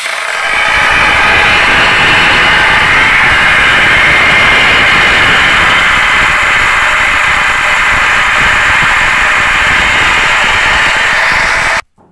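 Angle grinder running at full speed with its disc pressed against the face of a glazed ceramic tile to shake the tile pieces stuck to it. Loud and steady, it stops abruptly near the end.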